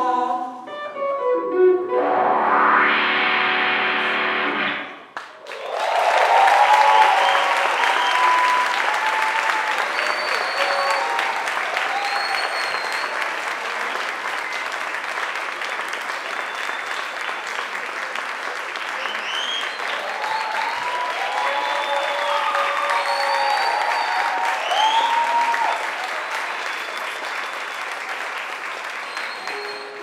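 A live band's closing notes end about five seconds in. They are followed by audience applause with cheers and whistles, which fades near the end.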